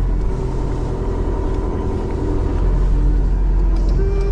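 Motorhome driving on the road, heard from inside the cab: a steady low rumble of engine and road noise.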